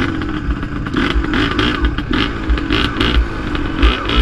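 Yamaha DT 180's single-cylinder two-stroke engine running at low revs in slow traffic, its pitch wavering slightly up and down with the throttle.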